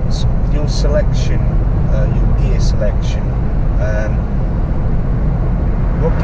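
Steady low rumble of road and engine noise inside a moving car's cabin, at a constant level while the car drives at a steady speed.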